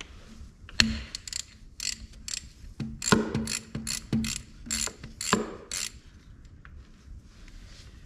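Hand ratchet with a socket clicking in short, irregular runs as a final-drive drain plug is backed out. The clicking stops about six seconds in.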